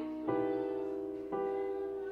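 Yamaha electric keyboard played with a piano sound: slow, sustained chords, a new chord struck about every second, twice in this stretch, each fading slowly.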